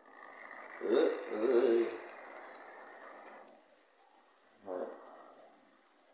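Model train locomotive's small electric motor whirring and its wheels running on the track as it pulls away with three coaches, loudest about a second or two in, then fading as it moves off.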